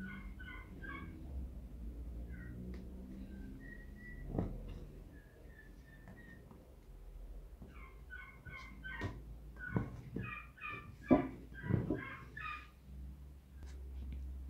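Faint animal calls in quick runs of short, repeated high notes, with a few sharp knocks.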